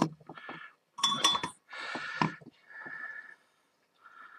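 Solder reel and soldering tools handled on a workbench: a sharp clink about a second in, then a few short rustles and handling noises.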